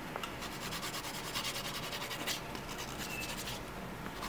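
Hand nail file rubbing back and forth in quick, even strokes across the end of a fingernail, smoothing the edges after electric-file work.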